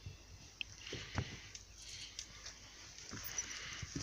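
Faint, irregular footsteps and knocks on the boards of a weathered wooden jetty: a handful of soft thumps, the loudest a little over a second in.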